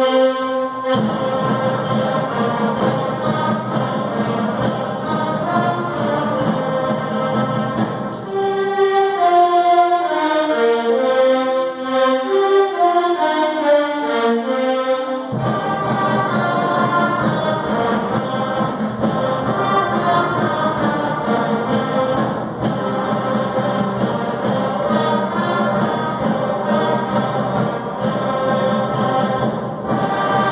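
Student concert band of woodwinds, saxophones and brass playing. About eight seconds in, the low instruments drop out for a lighter passage of moving higher lines, and around fifteen seconds the full band comes back in with the low brass.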